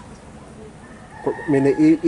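A faint animal call in the background, one held note about a second long, starting just before the middle, with a woman's voice starting to speak over its second half.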